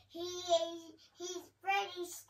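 A young boy's voice in a drawn-out, sing-song vocalization with no clear words, one long held sound followed by a few short syllables.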